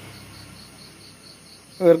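Faint, high, evenly pulsing chirp, about six or seven pulses a second, like a cricket calling in the background; a man's voice comes back near the end.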